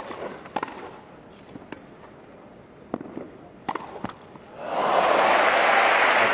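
Tennis ball struck by rackets during a rally, a handful of sharp pops spread over the first four seconds, then crowd applause breaks out loudly about four and a half seconds in and holds.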